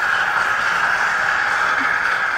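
Steady hiss on the broadcast audio, with a constant high, narrow hum running through it and no clear words.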